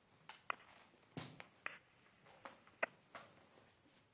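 Faint room tone broken by about six short, irregular clicks and knocks, the sharpest about half a second in and just before three seconds.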